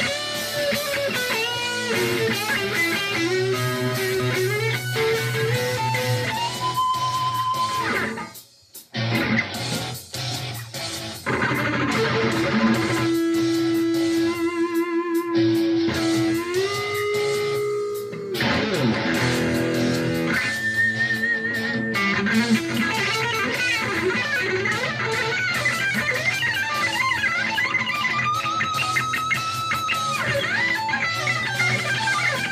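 Electric guitar lead over a rock backing track: notes bent up and held with vibrato, and fast runs toward the end. The backing drops out briefly about eight seconds in.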